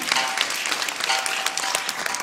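Audience applauding, with scattered laughter.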